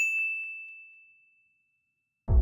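A single bright ding from a notification-bell sound effect: it strikes once and rings on one high tone, fading out over about a second and a half.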